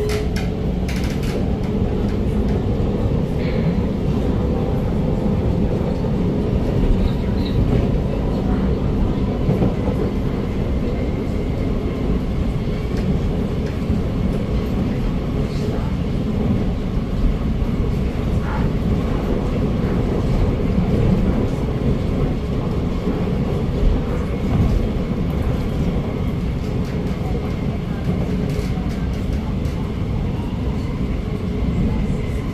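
Alstom MOVIA R151 metro train running at speed, heard from inside the car: a steady rumble of wheels on rail, with faint steady whines from the SiC-VVVF traction drive.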